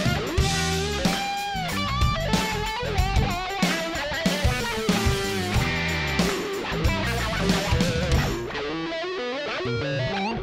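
Electric guitar lead with string bends, played on a Stratocaster, over a rock drum beat with no rhythm guitar underneath. It gets a little quieter and duller near the end.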